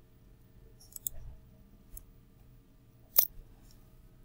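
Computer mouse clicks: a few faint clicks about a second in and at two seconds, then one sharp, louder click a little past three seconds.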